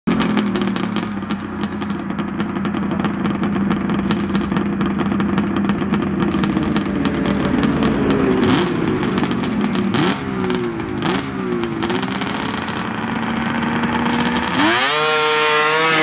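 Pro stock race snowmobile's two-stroke engine idling steadily. Past the middle the throttle is blipped several times, the pitch jumping up and falling back. Near the end it is opened up as the sled takes off, the pitch climbing sharply and holding high.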